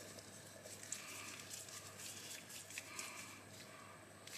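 Faint handling sounds: light metal ticks and rubbing as gloved hands turn a small screwdriver, driving the tiny back-spacer screws into an Ontario RAT Model 1 folding knife.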